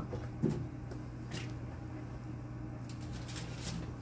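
Tabletop autoclave being opened: its door latch handle turned and the chamber door swung open, with a knock and a few clicks. Near the end a sterilization pouch crinkles as it is lifted out, all over a steady low hum.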